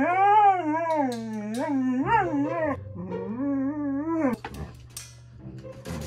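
A Siberian husky 'talking': two long, wavering howl-like calls whose pitch rises and falls, the first lasting nearly three seconds and the second about a second and a half, then quieter for the last second and a half.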